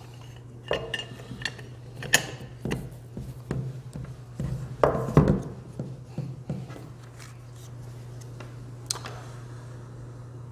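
Metal wheel guard being handled and fitted onto the gear head of an unpowered Bosch GWX 125 S X-LOCK angle grinder: an irregular string of metal-on-metal clinks and knocks, the loudest about five seconds in, with one more click near the end.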